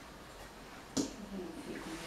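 A single sharp click about a second in, then a woman's voice murmuring faintly.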